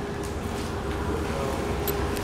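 A steady low mechanical hum with one even tone running through it, and a short click near the end.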